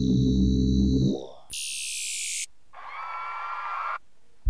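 Short preset previews from the AIR Transfuser 2 plug-in, triggered one after another. First a low synth chord that stops about a second in, then a brief burst of bright hissy noise, then a mid-pitched synth texture that is cut off abruptly.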